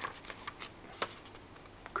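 Faint paper rustling as a small printed booklet is opened and its pages handled, with a few soft ticks, the sharpest about a second in.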